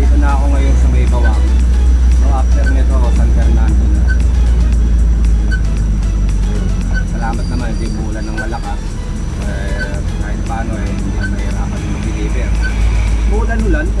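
Background music with a steady beat, over the continuous low rumble of a vehicle's engine and road noise heard from inside the cab, with a voice now and then.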